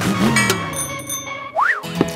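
Background music with cartoon sound effects: a brief high twinkling chime just under a second in, then a quick up-and-down 'boing' glide near the end.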